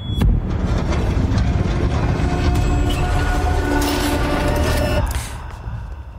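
Cinematic trailer soundtrack: dark music over heavy rumbling sound effects. It opens with a sudden hit, has held notes in the middle and dies down near the end.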